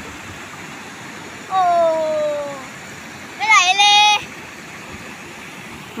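Steady rush of a shallow stream flowing over rocks below a weir spillway. Over it a voice calls out twice without words: a long falling 'ooh' about a second and a half in, then a louder, higher, wavering shout around three and a half seconds.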